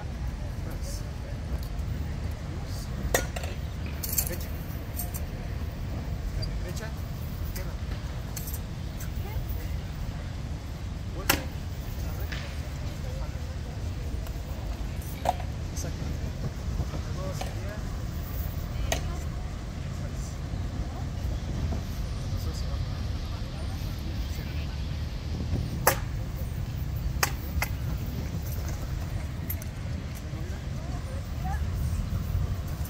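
Wooden practice weapons knocking against round shields and each other in sparring: several sharp, separate knocks spaced seconds apart, over a steady low background rumble.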